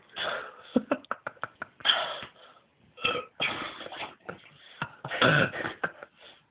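A man coughing, gasping and burping in short bursts just after downing a pint of cider. A quick run of small clicks or taps comes about a second in.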